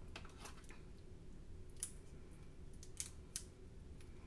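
Faint handling sounds of paper and tape: a few soft crackles and light ticks as sublimation paper is pressed and taped around an earring blank.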